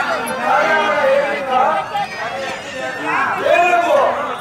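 Speech: voices declaiming Telugu stage dialogue, with some chatter from the crowd.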